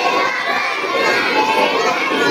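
Many children's voices chanting together in chorus: a class repeating a Quran letter-spelling drill aloud.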